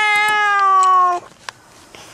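A young child's long whining cry, one held high note that sinks slightly in pitch and cuts off about a second in, followed by a single sharp click.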